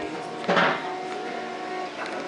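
Music playing from a small stereo system, with held notes. About half a second in there is a short, loud burst of sound over it.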